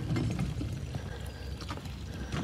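Collapsible utility wagon's wheels rolling over wooden dock planks: a low steady rumble with a few light clicks as they cross the gaps between boards.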